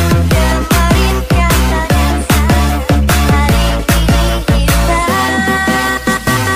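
Jungle dutch DJ mix playing loud: heavy bass hits with falling-pitch bass notes in a fast, uneven rhythm. About five seconds in, the drums and bass drop out, leaving a held synth chord.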